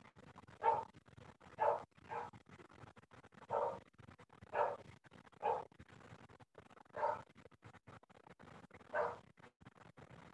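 A dog barking in short single barks, about eight at uneven intervals, fainter than the talk around it.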